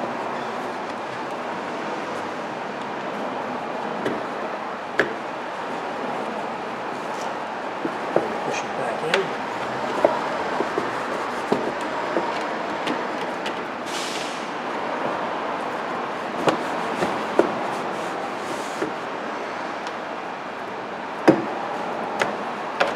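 Scattered small clicks and taps of rubber trunk weather stripping and plastic trim being pressed back onto the trunk opening by hand, over a steady background of shop noise. A brief hiss comes about 14 seconds in.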